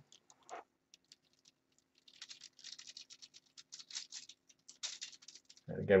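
Paintbrush stirring a glaze of acrylic paint and matte medium on a foil-covered palette: a soft, scratchy rustle of bristles working over the foil, starting about two seconds in and going on in quick, uneven strokes.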